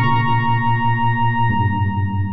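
Yamaha DX7IID FM synthesizer playing a dry patch with no effects: a held high note over a low note that pulses several times a second. The low note steps to a new pitch about one and a half seconds in.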